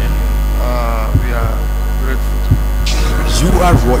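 Loud, steady electrical mains hum, with faint snatches of a voice behind it twice.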